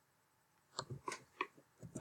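A few faint, separate clicks of a computer mouse and keyboard, starting a little under a second in.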